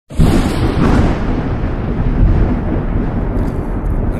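Thunder sound effect: a loud, deep rumble of thunder that cuts in suddenly at the very beginning.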